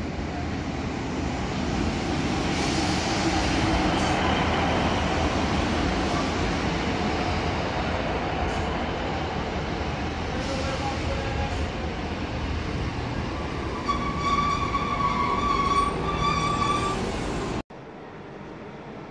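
A Class 153 diesel railcar pulling into a station platform: a rumble of engine and wheels that builds over the first few seconds and holds steady as the train runs past. Near the end come two long high-pitched squeals as it slows, and the sound cuts off suddenly.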